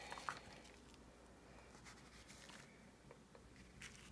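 Near silence: faint room tone with one soft click about a third of a second in and a few light taps near the end, from a small plastic cup being handled and pressed onto paper to stamp a paint circle.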